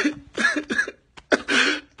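A man sobbing: a few short, broken vocal sobs, then a longer ragged, breathy gasp in the second half.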